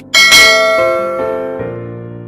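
A bright bell-chime sound effect, struck just after the start, rings and fades over about a second and a half over background music.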